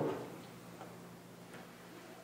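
A few faint ticks spread over two seconds, over a steady low hum.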